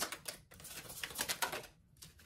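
A deck of tarot cards being shuffled: a quick run of light clicks lasting about a second and a half.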